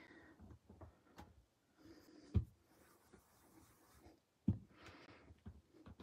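Faint handling sounds with two sharper taps, about two and a half and four and a half seconds in, as a rubber stamp on a clear stamping plate is re-inked from an ink pad.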